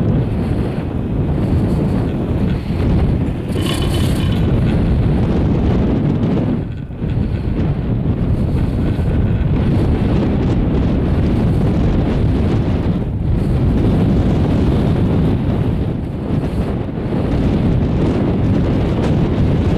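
Strong wind buffeting the microphone of a camera riding an open chairlift in blowing snow: a loud, unbroken low rumble that eases briefly about seven seconds in. A short, higher rattle cuts through about four seconds in.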